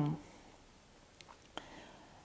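A woman's spoken word trails off at the very start, then near-silent room tone with two faint clicks, about a second and a second and a half in.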